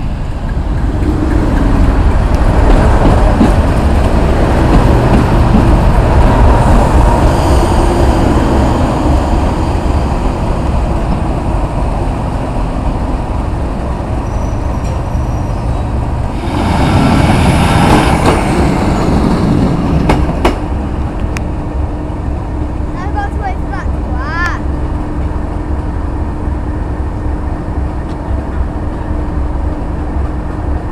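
British Rail Class 37 diesel locomotive, its English Electric V12 engine running loud as it passes close by. Just after halfway a loud rushing burst lasts a couple of seconds, and the engine then settles to a steadier, quieter running note.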